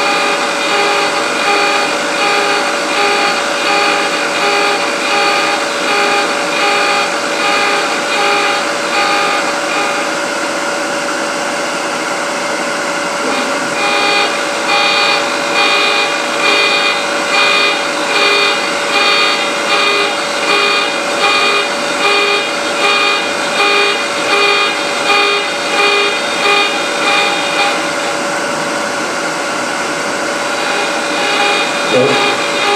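High-speed rotary cutter of a lathe threading jig, spinning at about 3,000 RPM, running with a steady whine and a rhythmic pulsing as it cuts threads into a turned box piece. The pulsing fades for a few seconds in the middle, then returns.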